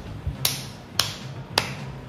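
Three sharp snap-like percussion hits, evenly spaced about half a second apart, over a low steady hum, from a soundtrack.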